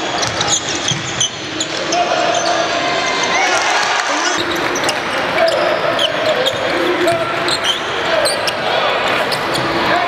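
Basketball game in progress in a large arena: a basketball bouncing on the hardwood court under a steady mix of crowd voices and held shouts.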